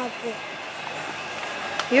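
Steady rolling rattle of a wire shopping trolley being pushed along a concrete warehouse floor.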